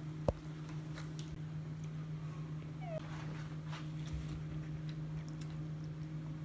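Guinea pig giving a brief, short squeak about three seconds in, among faint rustling of paper towel and hay. A sharp click comes near the start, over a steady low hum.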